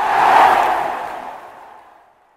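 A whooshing sound-effect swell of noise for a logo reveal, rising to a peak about half a second in and then fading away.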